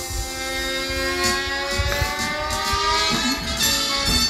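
Background music with a sustained chord whose pitch rises slowly through most of the span.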